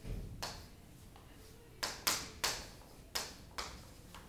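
Chalk on a chalkboard while writing: a quick series of sharp taps and short scratchy strokes, a couple near the start and a cluster of about five from about two seconds in.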